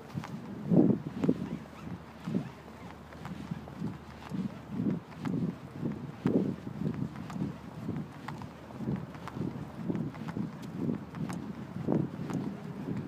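Footsteps of a person walking on a paved path, a steady run of low thuds about two a second, the loudest two about a second in.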